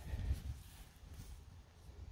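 Faint, muffled hoofbeats of a horse walking on soft dirt and grass, strongest in the first half second, then mostly quiet.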